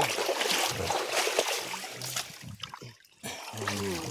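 Shallow muddy river water splashing and sloshing irregularly as it is stirred up, with low voices in the background.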